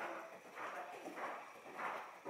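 Hoofbeats of a ridden horse on the dirt footing of an indoor arena, in an even rhythm of about one beat every two-thirds of a second.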